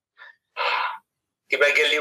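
A man's short, sharp audible breath about half a second in, followed by his voice as he starts speaking again.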